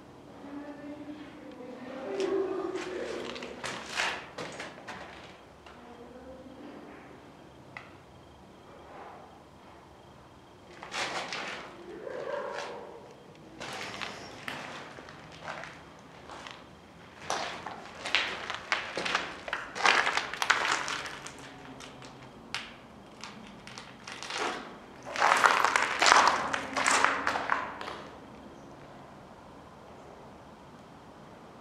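Footsteps and scraping on a rubble-strewn concrete floor, in irregular clusters that are loudest near the middle and toward the end. Muffled voices can be heard at the start and again about twelve seconds in.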